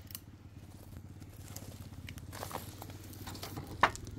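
Footsteps crunching on gravel and mulch, with small scattered clicks and rustles over a faint steady low hum, and one sharper click near the end.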